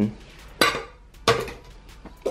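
Metal brew kettle clanking against the top of a BioLite camp stove, two sharp knocks about half a second apart, each ringing briefly.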